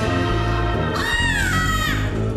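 Stage music with a beat, and about a second in a high, cat-like cry that rises quickly and then slides down in pitch for nearly a second.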